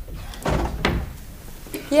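A door being shut, a sudden thud about half a second in followed by a quieter knock.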